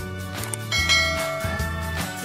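Background music with a bell-like chime sound effect that rings out suddenly under a second in and fades away, the notification-bell cue of an animated subscribe button.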